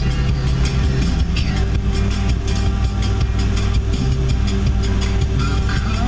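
Music from a car stereo playing inside a moving vehicle's cabin, over the steady low rumble of the engine and road noise.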